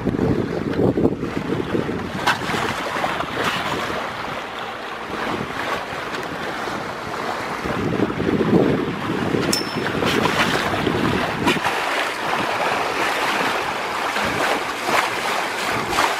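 Water rushing and splashing along the bow of a sailboat moving through the water as it pushes up its bow wave, with wind buffeting the microphone.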